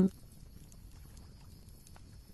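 The tail of a spoken word, then a faint steady hiss with a thin high-pitched tone, the quiet background under the narration.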